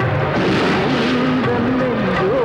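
Film soundtrack music with held notes under a loud, steady rushing noise.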